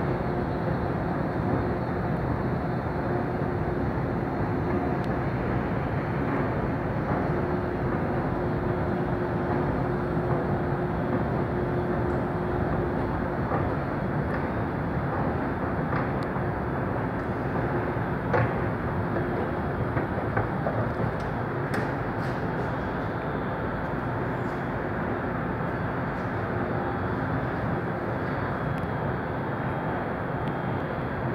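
Steady rumble and hiss of an underground metro station: machinery and ventilation noise with a faint steady hum, and a few light clicks past the middle.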